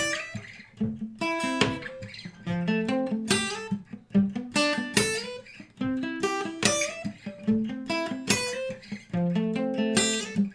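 Acoustic guitar playing an arpeggio through C major, A minor, F and G triads in a steady stream of picked notes, with slides on the high E string.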